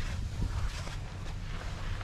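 Wind on the microphone, a low steady rumble.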